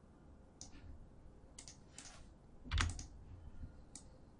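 Computer keyboard typing: about half a dozen separate key presses, the strongest a little under three seconds in with a dull low thump.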